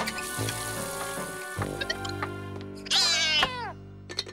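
A cartoon cat's loud yowl, sliding down in pitch, about three seconds in, over the show's music score.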